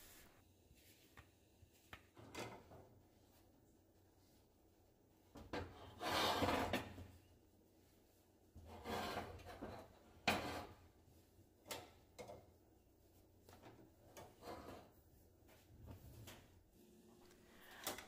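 Faint, intermittent kitchen handling sounds: a silicone spatula scraping and spreading batter in a cast-iron skillet, and the heavy skillet being taken up off the gas stove's grate, with a few sharp knocks.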